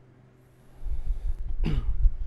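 A man's single short cough about three-quarters of the way in, over a low rumble that starts about a second in.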